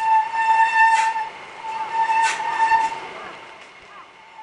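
Mountain bike brakes squealing as the rider slows on a downhill: two steady high-pitched squeals of about a second each, with a short break between and a couple of sharp clicks, fading as the bike moves away.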